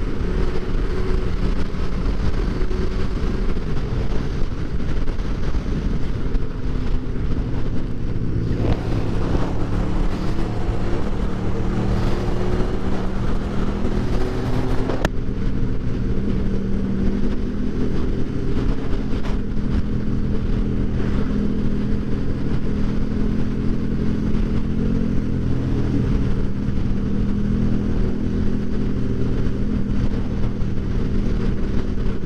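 Motorcycle engine running while riding on the road, with wind rush. The revs rise and fall, and there is a stretch of harder revving in the middle. One sharp click is heard about halfway.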